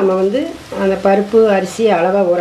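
A person talking in drawn-out phrases broken by short pauses.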